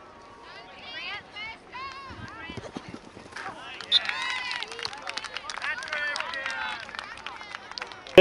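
Distant shouting and calling of players and spectators across an open soccer field. It gets louder and busier about halfway through.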